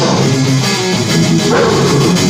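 Death metal playing loudly: distorted guitars over a drum kit struck in close, rapid hits.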